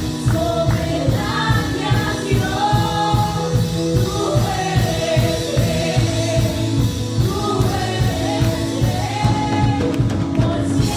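Live Spanish-language worship song: several singers on microphones singing together over instrumental accompaniment with a steady beat.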